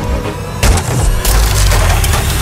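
Wood splintering and cracking in two sharp impacts about half a second apart, over background music with a heavy low beat.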